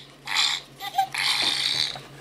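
Ugglys Pet Shop playset's built-in sound chip playing a short gross-out sound effect through its small speaker: a brief burst, then a longer one starting about a second in.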